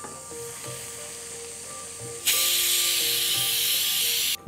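Cumin, ginger and garlic frying in hot ghee as a wooden spatula stirs them: a low sizzle that jumps to a loud, steady hiss a little over two seconds in. Soft background music plays under it.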